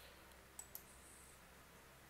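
Near silence with two faint clicks of a computer mouse, a fifth of a second apart, a little over half a second in.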